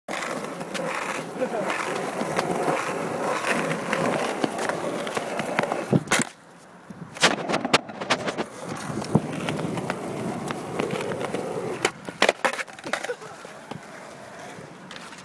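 Skateboard wheels rolling over pavement, broken by sharp clacks of the board hitting the ground around six to eight seconds in. A second cluster of clacks near twelve seconds comes as the rider bails.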